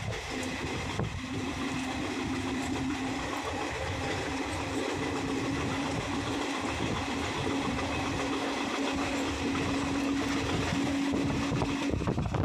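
Express train running at speed, heard from an open coach doorway: steady rolling noise of the wheels on the rails, with a steady low hum throughout.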